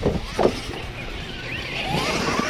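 Radio-controlled monster truck driving across dirt, its electric motor whining and rising in pitch in the second half as the truck comes closer, with two short loud bumps near the start.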